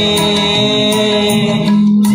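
A man singing a Kannada song into a microphone. He draws out long held notes that bend slowly in pitch, and one note swells near the end. A faint, regular tick keeps time behind the voice.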